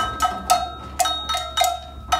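Classroom percussion of hand drums and rhythm sticks playing a steady beat of about four strokes a second, each stroke ringing with a bright pitched tone.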